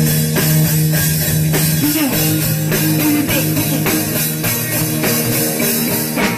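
Rock band playing live: drum kit and electric guitar in an instrumental passage without vocals, with one guitar note bending upward about two seconds in.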